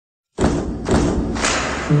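Three deep thuds about half a second apart, then music begins near the end.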